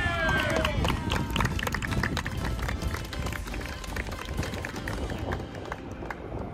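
A group of children and adults applauding, with dense, irregular clapping for several seconds, just after a short shout at the start.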